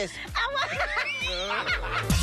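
People laughing and snickering, mixed with a little speech.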